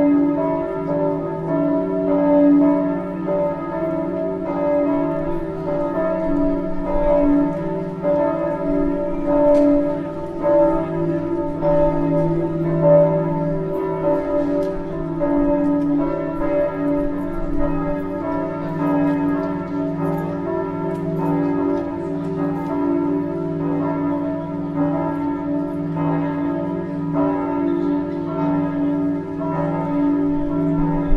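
Several church bells ringing together without a pause, their many tones overlapping and blending into one steady peal.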